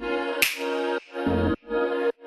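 Pop song: a sung vocal line over pitched notes that stop and start in short phrases, with a sharp percussive hit about half a second in.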